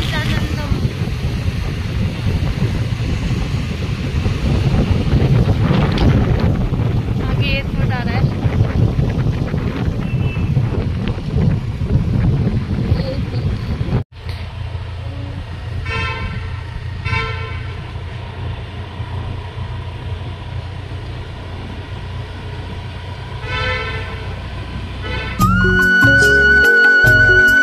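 Road traffic noise heard from a moving vehicle, with vehicle horns tooting several times. After a sudden cut halfway through, the traffic is quieter with a few more horn toots, and music begins near the end.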